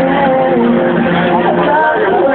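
Live band music with a singer's voice gliding over held instrument notes.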